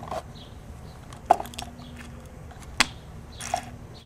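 Spring-loaded battery clamp leads being handled and taken off a lead-acid battery's terminals: two sharp metallic clicks about a second and a half apart, with fainter clicks and a short rustle of the leads.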